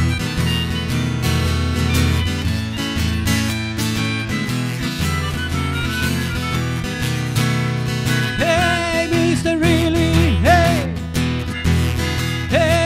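A melodica and an acoustic guitar playing a folk-style tune together: held reedy melodica notes over steady guitar strumming. About eight seconds in, a wavering, bending melody line comes in on top.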